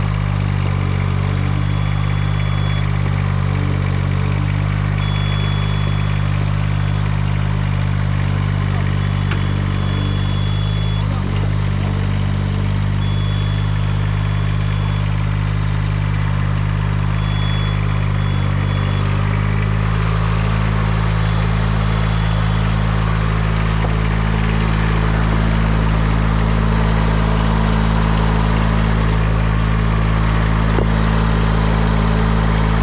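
Engine of a tracked spider lift running steadily. About two-thirds of the way in its note deepens and it grows gradually louder toward the end.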